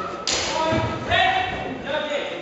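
Sparring in a historical-fencing bout: a dull thud about a quarter second in, then raised voices calling out in a large sports hall.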